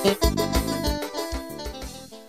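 Electronic keyboard music with a drum beat, fading down as a song ends; the held keyboard notes die away after the last drum strokes.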